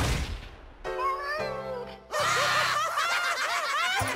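Cartoon soundtrack: a sudden whoosh right at the start, a short musical phrase, then from about two seconds in a group of characters laughing loudly over music.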